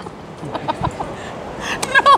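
Women laughing in short, breathy pulses in reaction to a magic trick's reveal, with a louder burst of laughter near the end.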